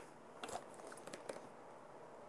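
Faint clicks and crinkles of a plastic water bottle being picked up and handled, a few short ticks a little under a second apart.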